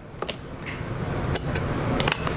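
Spring hitch-pin clips being pulled from the pins of a steel adjustable ball mount and set down: a few light metallic clicks over soft handling noise.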